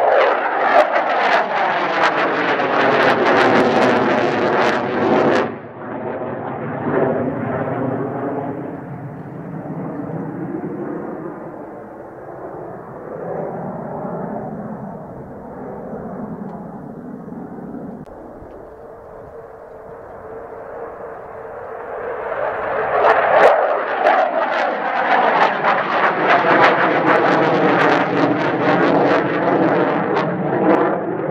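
The twin J79 turbojets of an F-4EJ Kai Phantom II roar loudly as the jet passes close, and the sound drops off sharply about five seconds in. A fainter jet roar with sweeping, falling tones follows, then builds back to a loud roar over the last eight seconds as the jet banks around.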